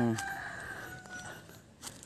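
A rooster crowing faintly: one drawn-out crow about a second long.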